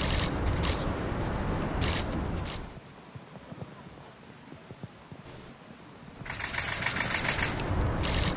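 A low rumble for the first few seconds, then from about six seconds in a dense, rapid clatter of many camera shutters firing at once.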